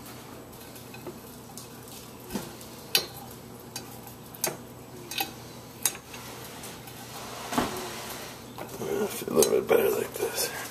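Scattered sharp clinks and knocks as a piece of seasoned beef is set onto the wire rack inside a Flavorwave turbo oven's glass bowl, over a steady low hum. A denser patch of handling noise comes near the end.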